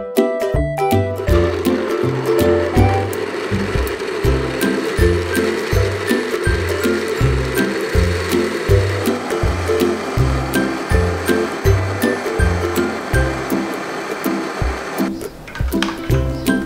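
Electric countertop blender running steadily, blending cubed coconut into coconut milk; it starts about a second in and cuts off near the end. Background music with a steady bass line plays throughout.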